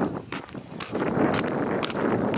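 Footsteps of a person walking on an asphalt lane at a steady pace, about two steps a second, over a steady rushing noise.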